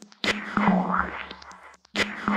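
Hardcore techno track in a quiet opening section: a noisy sampled phrase over a low held tone. It cuts in suddenly, fades, and repeats about every second and three-quarters, with brief gaps between.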